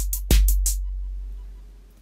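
Hip-hop drum-machine loop playing back in a music app: a deep kick drum about a third of a second in, with a long low bass tail, and crisp hi-hat ticks. The ticks stop under a second in when playback is halted, and the bass tail fades away.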